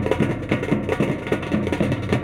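Fast folk drumming on hand drums: a steady, driving rhythm of many strokes a second with low, pitched drum tones.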